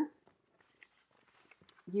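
Faint rustling of paper planner insert sheets being handled and lifted, with a couple of soft ticks, between a woman's words at the start and end.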